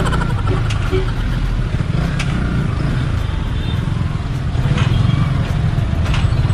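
Yamaha R15 v3's single-cylinder engine running at low speed under wind rumble on the GoPro's built-in mic, with a few knocks from a bumpy road surface in the second half. Loudness rises a little toward the end.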